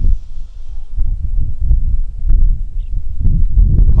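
Wind buffeting an outdoor microphone: loud, irregular low rumbling and thumping.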